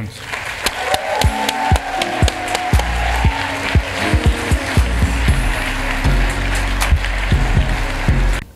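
Audience applause over walk-on music played through the hall's speakers, the music's bass coming in about three seconds in.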